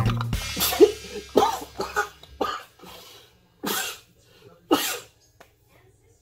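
A man coughing in a fit of about six coughs, stopping about five seconds in, after getting too close to a strong-smelling ingredient in a small vial. The tail of guitar music cuts off at the very start.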